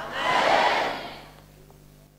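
A congregation's brief collective response: a burst of crowd voices that swells and dies away within about a second and a half.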